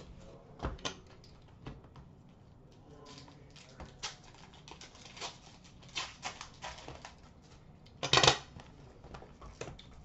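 Trading card packs, boxes and cards being handled on a glass counter: soft scattered rustles, taps and clicks, with one louder, brief rustle about eight seconds in.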